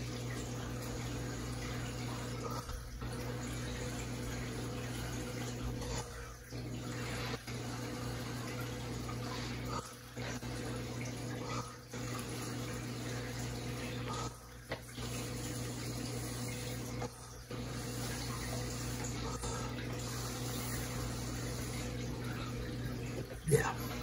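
A steady rush of breath blown across wet acrylic paint to push and spread it in a Dutch pour blowout, broken by short pauses every two to three seconds as he draws breath.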